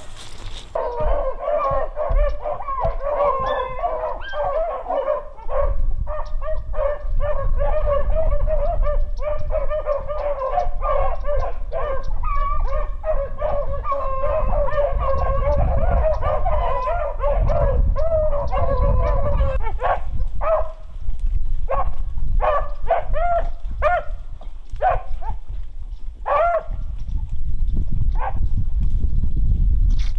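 Several rabbit-hunting dogs baying together in a dense, continuous chorus, then breaking into separate, spaced barks about twenty seconds in: the pack is running a rabbit's scent trail through the brush.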